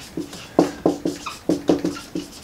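Dry-erase marker squeaking on a whiteboard as letters are written: a quick series of short, pitched squeaks, several a second, one for each pen stroke.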